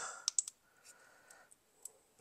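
Two sharp clicks in quick succession about a third of a second in, then a few faint scattered clicks: a caulking gun's trigger and plunger being worked as refractory sealant is squeezed onto a firebrick.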